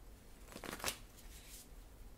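Tarot cards being shuffled by hand: a quick run of papery card strokes about half a second in, loudest near one second, then a softer run a little later.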